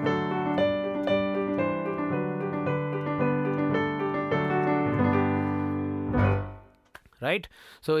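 Piano tone from a digital keyboard playing a simple melody over broken chords in a galloping sixteenth-note rhythm (one, and-a). The playing stops about six seconds in on a chord that rings briefly and dies away, and a man's voice follows near the end.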